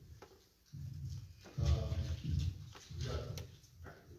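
A man's low voice in three short stretches, the words indistinct.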